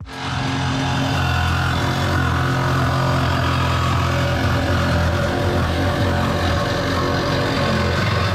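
Cordless jigsaw running steadily as it cuts through the thin painted sheet metal of a van's side wall. It starts at once and holds an even pitch throughout.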